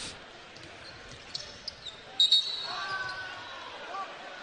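Basketball being dribbled on a hardwood court amid arena noise, with a few short sneaker squeaks. About two seconds in a referee's whistle blows once, short and sharp, the loudest sound, stopping play for a foul.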